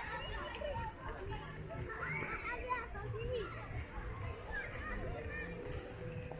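Children playing: overlapping high-pitched shouts and calls of several young voices, with some talk among them.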